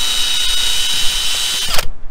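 Handheld electric drill fitted for polishing a stainless chainplate, running steadily at high speed with a high whine. It stops abruptly just before the end.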